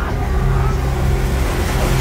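Trailer sound design: a loud, dense rushing noise over a deep rumble, building slightly and ending in a sudden hit at the very end.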